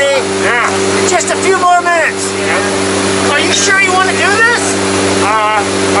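Steady, loud drone of a jump plane's propeller engines heard inside the cabin in flight, with voices raised over it at times.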